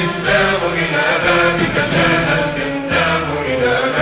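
Arabic devotional chant over background music: a voice sings long, wavering melodic phrases above a low sustained drone.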